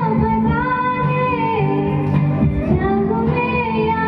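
A woman singing a Bengali song into a microphone, holding long notes that slide between pitches, over instrumental accompaniment.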